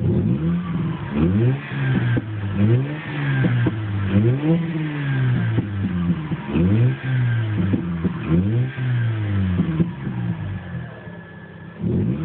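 Mazda RX-8's two-rotor Renesis rotary engine, heard from inside the cabin, revved repeatedly from idle, about once a second, settling to idle briefly near the end before another rev. It is running on newly fitted ignition coils with its fault codes cleared and ECU reset.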